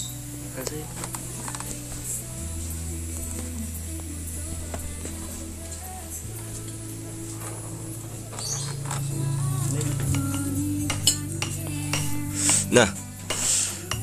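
Small steel bolts and a hex key clinking against each other and the concrete tabletop as the aluminium gearbox case of a mini tiller is unbolted, with sharper, louder clinks near the end. Background music with a steady bass runs underneath.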